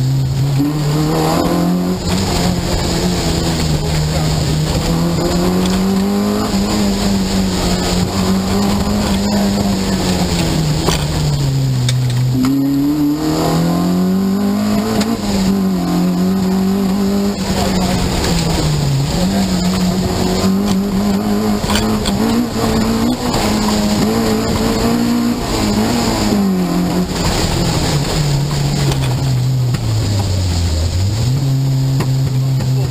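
Peugeot 205 GTI rally car's four-cylinder engine driven hard, heard from inside the cabin: its pitch repeatedly climbs and drops back with gear changes and lifting for corners, with deeper drops about twelve seconds in and near the end.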